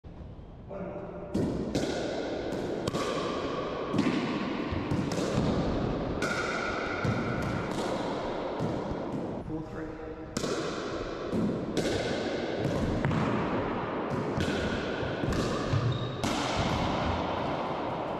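Pickleball rally: paddles striking the hard plastic ball and the ball bouncing off the floor and walls, sharp hits a fraction of a second apart, each ringing and echoing in the enclosed racquetball court. The hits break off briefly about halfway through, then resume.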